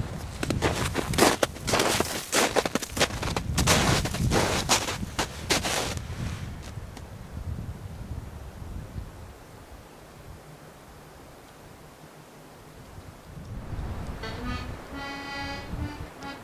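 A rapid, irregular run of loud crunching knocks for about six seconds, then a faint hiss, then accordion music starting near the end.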